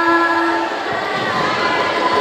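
Girls' voices singing a long held note that breaks off about two-thirds of a second in, then fainter sustained singing with a few soft hand-drum beats of a marawis ensemble.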